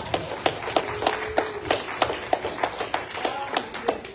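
Hands clapping in a steady rhythm, about three claps a second.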